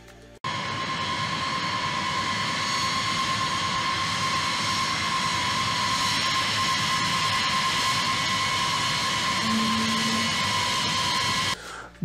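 Boeing B-52 Stratofortress's eight jet engines running, a steady whine with a strong high tone. It cuts in suddenly about half a second in and stops abruptly just before the end.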